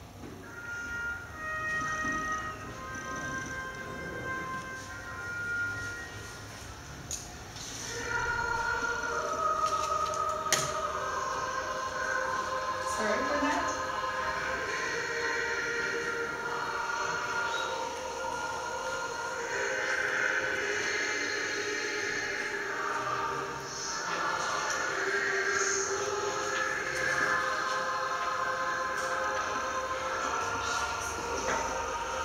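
A recording of a Lithuanian song played over a room's loudspeakers. It opens with short, separate high notes; from about eight seconds in, many voices sing together in long held chords.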